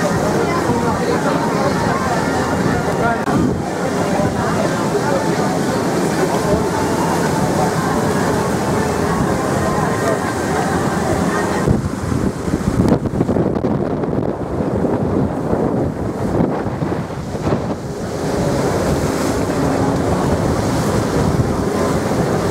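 Passenger boat under way at sea: a steady engine drone under rushing water from the hull's wash, with wind buffeting the microphone. For several seconds past the middle the sound thins out and the wind gusts unevenly.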